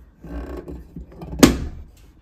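Hand working open the door of a small wooden doll wardrobe: a soft rubbing against the wood, then one sharp click about one and a half seconds in as the door catch lets go.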